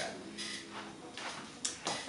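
Soft rustling and a few light taps from a ribbon and craft materials being handled on a table.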